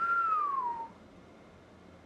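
A person whistling one short note, under a second long, that swoops downward in pitch and then stops.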